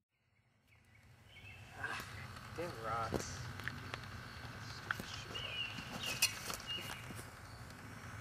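About a second of silence, then a faint outdoor background with a few short animal calls, brief high thin chirps and a few light taps and scuffs.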